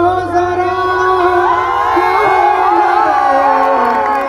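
Male vocalist singing live into a microphone through a PA, over steadily held accompanying notes, with audience noise underneath.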